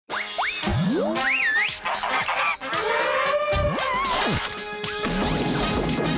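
Title-sequence music mixed with cartoon sound effects: quick whistle-like glides that sweep up and down in pitch, and several sharp hits.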